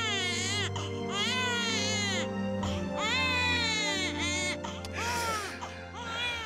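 Infant crying in long, high-pitched wails: about four cries, each rising and then falling in pitch, over steady background music.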